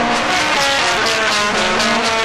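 Instrumental rock music without singing: a distorted electric guitar plays a quick run of changing notes over the band.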